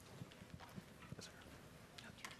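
Near silence: room tone of an audience hall, with faint scattered knocks and shuffles.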